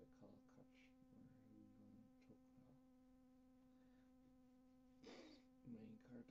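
Faint steady buzz holding one pitch, with a brief breathy noise about five seconds in.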